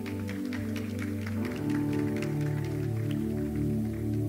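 Soft ambient background music of sustained, slowly changing chords, with scattered hand claps through the first three seconds.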